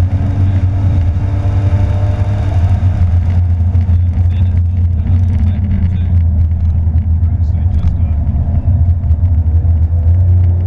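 Porsche 911 GT3's flat-six engine and road noise heard from inside the cabin on track: a loud, steady low drone, with the engine's tones gliding slightly in the first few seconds.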